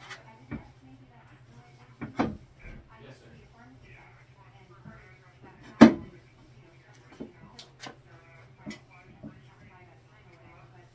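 Scattered knocks and taps of things being handled and set down on a bathroom vanity countertop while it is wiped with a cloth. The loudest is a sharp knock just before six seconds in, with several lighter taps after it.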